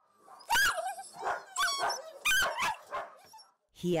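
Kennelled dogs barking and whining: about five short, high calls with gliding pitch, in quick succession.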